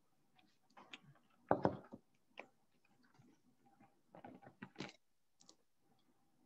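Faint handling noises from a paper coffee filter and plastic funnel being fitted together and set over a basin: scattered light clicks and rustles, the loudest a little over a second and a half in, with another cluster around four to five seconds.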